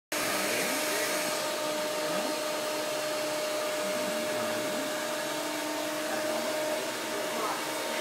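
Corded electric hair clippers running with a steady hum as they cut hair, with faint shop chatter underneath.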